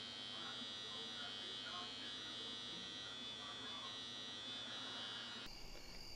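Electric razor buzzing steadily at a fairly low level.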